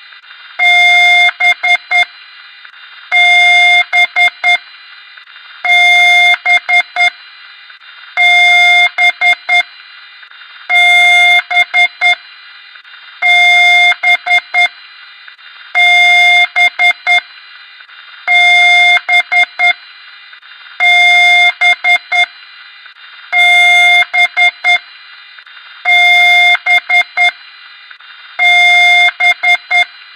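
Computer speaker beeping in a repeating pattern: one long beep of about a second, then a quick run of about four short beeps, the cycle coming round every two and a half seconds, over a steady high hum.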